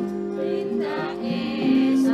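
Javanese gamelan music accompanying a dance, with held, ringing tones and a voice singing over it from about half a second in.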